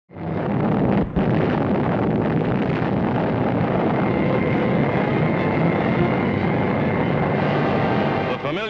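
Steady rumbling roar of an atomic bomb blast on an old film soundtrack. It starts abruptly, with a brief drop about a second in.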